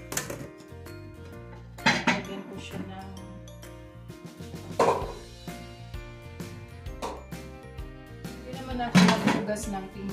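Dishes clinking and knocking against each other and the stainless steel sink as they are washed by hand: a handful of separate clatters, the loudest near the end. Background music plays steadily underneath.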